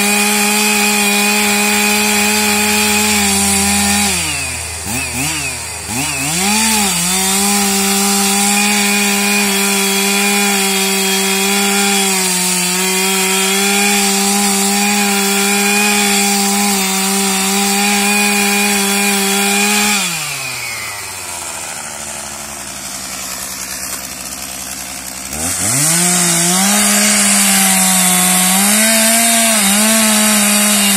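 Two-stroke chainsaw running at full throttle, cutting into a resin-rich fatwood stump. The engine note dips and revs back up about four seconds in. A little past the middle it falls to idle for about five seconds, then revs back up to full speed to cut again near the end.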